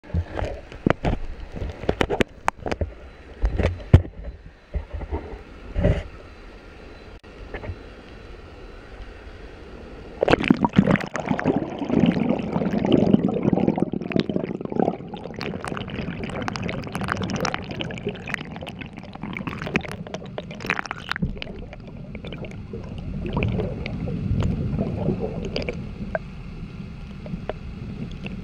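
Knocks and bumps from the camera being handled. From about ten seconds in comes a steady, muffled rushing and gurgling of flowing water, heard through the submerged camera.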